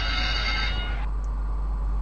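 A bright ringing signal from the virtual greyhound race stream as betting closes. It lasts about a second and cuts off suddenly, leaving a steady low hum.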